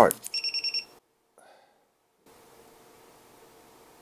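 A digital multimeter's beeper gives about six short, high-pitched beeps in quick succession within the first second, as the shorted test probes make contact in resistance mode. Faint room tone follows.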